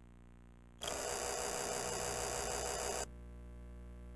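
A loud burst of static hiss lasting about two seconds, starting about a second in and cutting off abruptly, over a steady low electrical hum.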